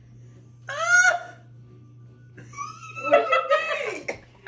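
People laughing: a short, high-pitched rising whoop about a second in, then a burst of choppy laughter through the last second and a half, over a steady low hum.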